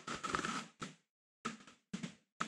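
Short rustles and knocks of handling close to the microphone: a dense patch in the first half-second, then a few separate knocks spaced about half a second apart.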